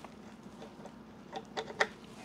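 A few small plastic clicks and taps, bunched about a second and a half in, as a 3D-printed cover is pressed down and seats onto the Hirose FX2 board-to-board connector of a Xeltek SuperPro 6100N programmer. A faint steady hum runs underneath.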